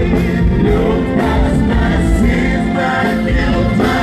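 Live gospel worship music: a group of singers with keyboard and band accompaniment and a low, steady beat, played loud.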